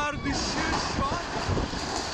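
Storm-force wind battering a phone's microphone, a steady loud rushing, with short cries from people breaking through it.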